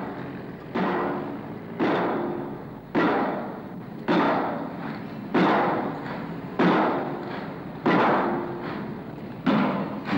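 Steam pile driver's ram striking a steel soldier pile, driving it into the ground: eight heavy blows about every 1.2 seconds, each ringing out and fading before the next.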